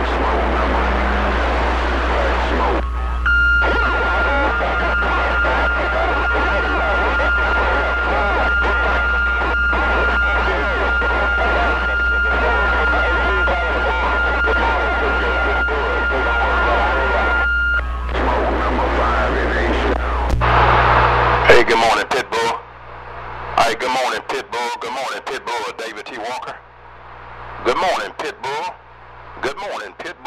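CB radio receiver audio: garbled, overlapping distant voices under heavy noise and a low hum, with a steady whistle from about 3 s to 18 s. About 21 seconds in the hum drops out and the signal turns choppy, breaking into short bursts and gaps as the voices fade in and out.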